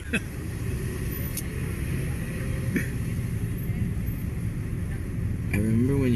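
Steady low rumble of a car heard from inside its cabin, from the back seat.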